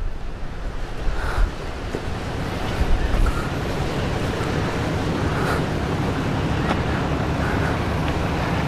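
Steady wind noise on the microphone: an even, low rumbling hiss with no breaks.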